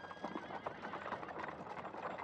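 Horses' hooves clopping irregularly among small knocks, at a low level.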